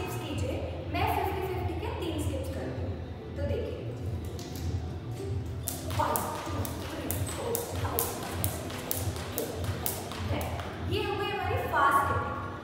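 Thin plastic skipping rope slapping a hard stone floor in a quick, even rhythm as someone skips, starting about halfway through and stopping about a second before the end.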